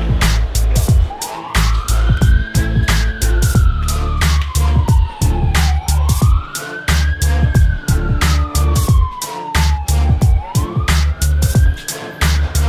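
Music with a steady drum beat and heavy bass, over which a siren wails, rising quickly and falling slowly, three times about four and a half seconds apart, starting about a second in.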